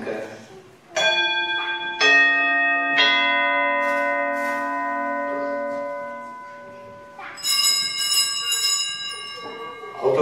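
Altar bells rung at the consecration of the wine during Mass, marking the elevation of the chalice. Three strikes about a second apart each add ringing tones that slowly fade, then a higher, brighter ringing starts about seven seconds in.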